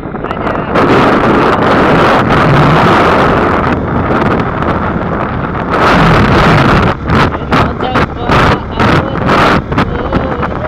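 Wind rushing over a phone microphone on a moving motorcycle, with the motorcycle's engine running underneath. The wind buffets in rapid gusts in the last few seconds.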